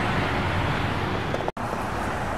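Steady hiss of road traffic, an even background rush with no distinct events. It cuts out for an instant about one and a half seconds in.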